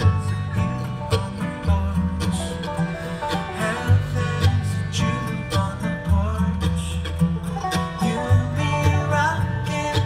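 Acoustic bluegrass string band playing live with mandolin, banjo, guitar and fiddle over deep upright bass notes, in an instrumental stretch between sung lines, heard through the festival PA.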